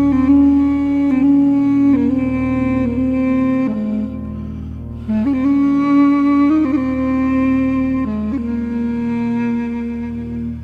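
Background music: a slow melody of long held notes over a low sustained accompaniment, with a short break in the phrase about halfway through.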